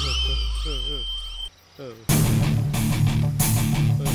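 Film soundtrack: swooping, sliding sound effects over a low drone, a brief silence, then loud rock music with electric guitar starting about two seconds in.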